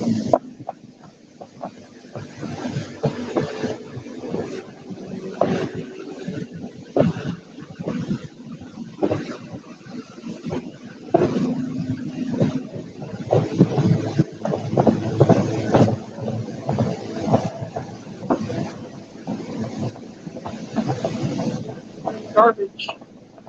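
Boat running across the water: wind buffeting the microphone in uneven gusts over water rushing along the hull, with a faint steady motor hum underneath.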